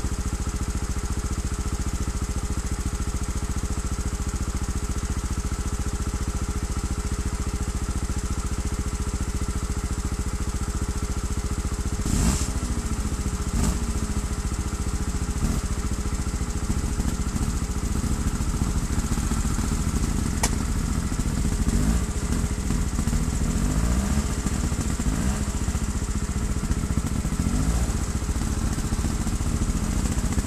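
Trials motorcycle engine idling steadily. About twelve seconds in there is a sharp knock, after which revs rise and fall irregularly on top of the idle.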